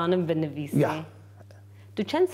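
A woman speaking for about a second, then a pause in which only a steady low electrical hum is left.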